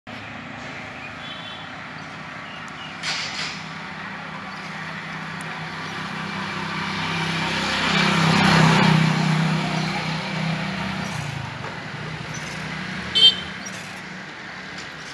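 Roadside traffic: a motor vehicle's engine approaches, passes loudest about eight and a half seconds in, and fades away, over a steady hum of the street. A brief, sharp, high-pitched sound comes near the end.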